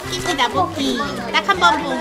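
Children's voices talking and calling out over one another.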